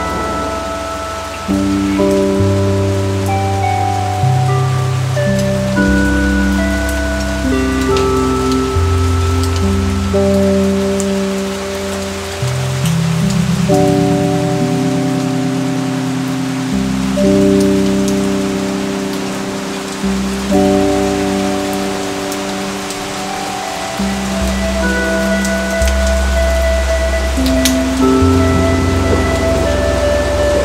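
Steady rain falling, with slow, soft ambient music of long sustained notes and deep bass tones laid over it.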